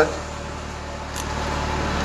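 Steady low hum in the background, with a single faint click about a second in.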